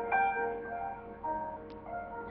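Instrumental backing track playing: sustained keyboard notes that change every half second or so, with no voice.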